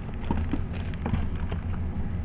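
Clear plastic packaging crinkling faintly as a bagged item is handled, over a steady low hum.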